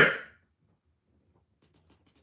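The end of a man's spoken word, then near silence with a few faint ticks about a second and a half in.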